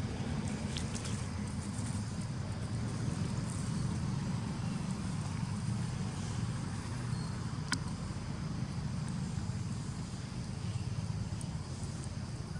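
Steady low rumble of outdoor background noise, with one sharp click about eight seconds in.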